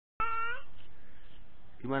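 A toddler's short high-pitched vocal call, about half a second long, right at the start. Near the end, an adult begins speaking.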